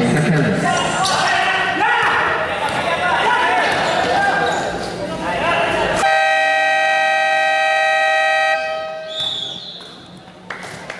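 Gym crowd voices and shouting during play. About six seconds in, a scoreboard buzzer sounds one steady electric horn tone for about two and a half seconds, then cuts off sharply.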